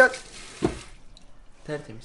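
Kitchen tap running into a steel sink while a hand is rinsed under the stream. The running water stops about a second in, and there is a brief low thump partway through.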